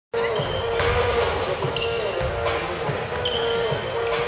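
A basketball bouncing on a hardwood gym floor, a low thud roughly every second, with voices echoing in the hall.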